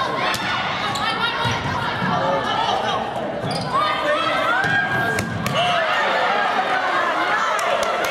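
Volleyball rally in a gym: sharp hits of the ball and sneakers squeaking on the court floor, with players and spectators calling out in the echoing hall.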